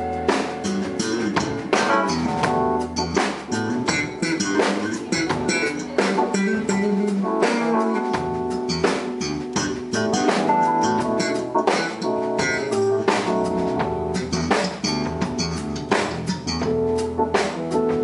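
A live soul band playing an instrumental passage: guitar over a steady drum-kit beat, with no singing.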